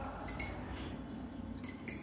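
Metal teaspoon clinking against a ceramic mug: a couple of light clinks, one shortly after the start and another near the end.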